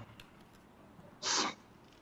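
One short voice-like burst, about a third of a second long, a little over a second in, over faint background noise. It is typical of a voice breaking up over a video-call link that is cutting in and out.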